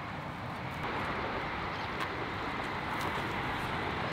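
Steady outdoor rushing noise of wind and distant road traffic, growing a little louder about a second in, with a few faint clicks in the middle.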